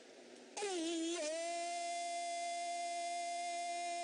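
A man's voice chanting. About half a second in it makes a quick wavering run, then settles into one long, steady held note.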